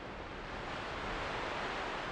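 Steady rushing noise like wind or rushing air, with no tone or beat, slowly swelling.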